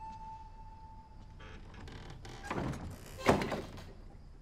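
Wooden lattice doors pushed shut: a brief rush of movement about two and a half seconds in, then a sharp thunk as they close a little over three seconds in. A held music note fades out in the first second.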